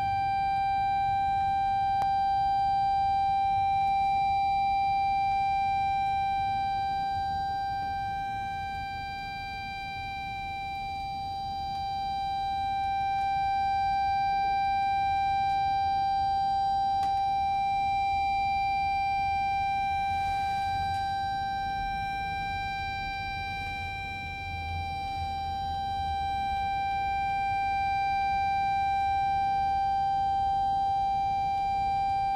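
A single high note held steadily on a musical instrument, unchanging in pitch, easing slightly in loudness about a third of the way in and again later.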